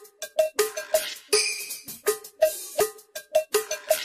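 Instrumental intro of a song: a quick, syncopated pattern of short knocking percussion strikes alternating between a lower and a higher pitch, with a bright hiss above them.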